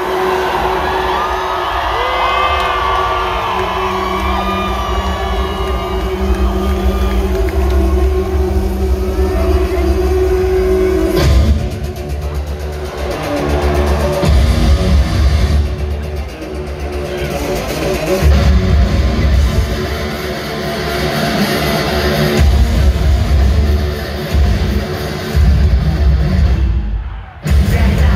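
Live rock concert in an arena, recorded on a phone from the crowd: a held note under the crowd cheering and screaming, then about eleven seconds in the band's heavy bass and drums come in hard. There is a brief drop-out just before the end.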